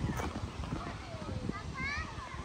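Footsteps walking across a rubber playground surface, with a faint, high child's voice calling out near the end.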